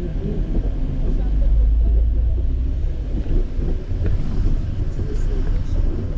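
Car cabin rumble while driving on a wet road: a steady low engine and road drone, heaviest a second or two in.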